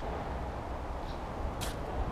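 Steady low outdoor background noise picked up by the camera microphone, with a brief high hiss about three-quarters of the way through.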